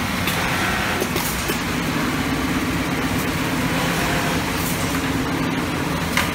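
Steady machinery noise of a garment-sewing workshop: a constant low drone and hiss, with a few light clicks.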